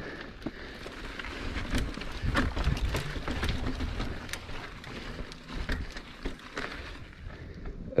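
Mountain bike rolling over loose gravel and rock: tyres crunching on stones, with a steady scatter of clicks and rattles from the bike.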